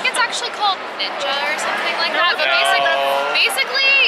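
Speech only: several people talking close to the camera.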